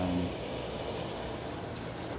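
Steady low background hum of room noise, with a short hummed voice sound right at the start and a brief faint hiss near the end.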